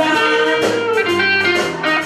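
Live band playing a blues song, with an electric guitar filling the gap between the sung lines.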